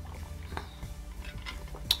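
Soft background music with a few faint clicks of ice knocking in a tumbler as an iced drink is sipped through a straw, and one sharper click near the end.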